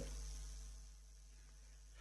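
Near silence: faint room tone with a low steady hum, fading further about a second in.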